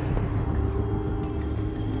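Soundtrack music with steady sustained tones, mixed with the running engine of a BMW M5 sedan driving fast.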